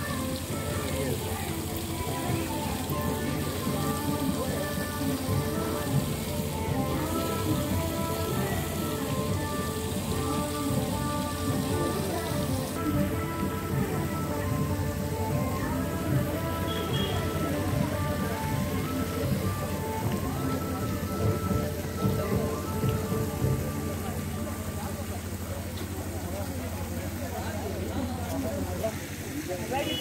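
Steady splashing of a small fountain spraying into a pond, with music of held and stepping tones playing over it.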